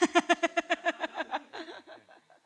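A person laughing: a quick run of about ten 'ha' pulses that fades out after about a second and a half.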